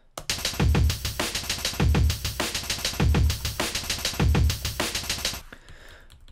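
A pre-sliced drum break, cut into eighth-note chunks, played back by Tidal as a fast breakbeat. Eight slices a cycle are drawn from only five, so some chunks repeat. A deep kick comes about every 1.2 seconds, and the beat stops about five and a half seconds in.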